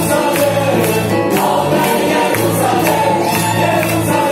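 Live band and choir performing an upbeat Christian song over loudspeakers: many voices singing together over a steady, evenly repeating beat.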